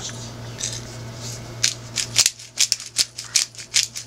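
McCormick black peppercorn grinder being twisted to grind pepper: soft rasping at first, then a quick run of sharp crackling clicks, about five a second, from a little under two seconds in.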